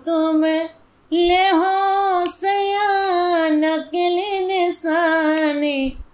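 A woman singing a Bundelkhandi folk song with no instrument, in long held notes with a slight waver. There is a brief breath break about a second in.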